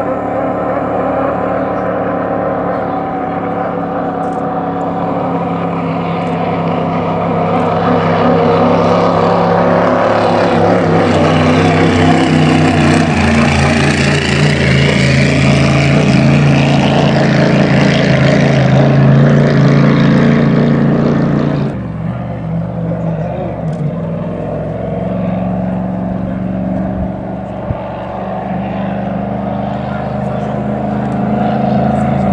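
BPM 8000 cc V8 engine of a three-point racing hydroplane running hard at speed. It grows louder as the boat passes and then drops suddenly about two thirds of the way through.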